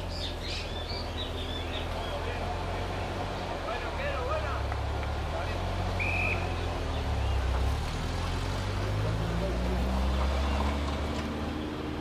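A motor vehicle engine running with a steady low rumble, rising in pitch in the second half as it pulls away or speeds up, under faint distant shouts from players.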